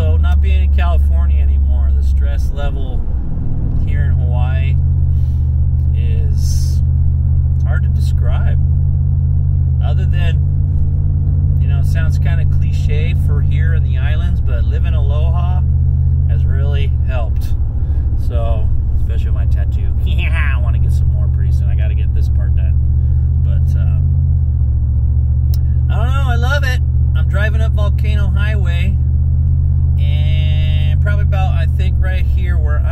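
Car engine and road drone heard from inside the cabin while driving, a steady low hum that shifts in pitch a few times. A voice is heard over it.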